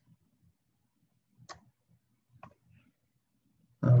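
Two faint short clicks about a second apart in a quiet room, typical of a computer keyboard or mouse at a desk. Near the end a man's voice starts a drawn-out "A ver".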